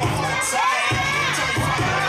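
Audience cheering and shouting over hip hop dance music, the crowd's voices louder than the music's steady bass beat, which drops out briefly just before a second in.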